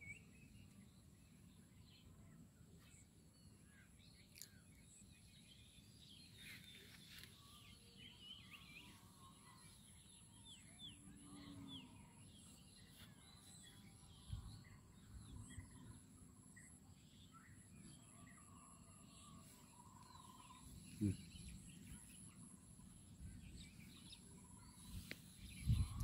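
Near silence: faint outdoor field ambience with scattered faint bird chirps and a faint steady high-pitched whine, and one soft knock about 21 seconds in.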